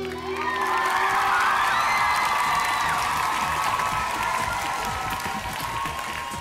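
The song's closing chord dies away in the first second or two, giving way to a studio audience applauding and cheering, with clapping and high shouts over it.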